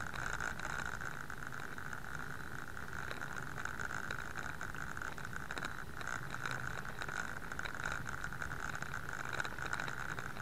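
Bicycle riding over pavement as heard from a bike-mounted camera: steady road and tyre noise with continual fine rattling from the mount, over a constant high-pitched hum.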